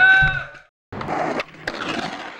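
A held voice from the live show fades out and the sound cuts off. After a short gap comes a skateboard sound: wheels rolling with a few sharp clacks of the board, then it dies away.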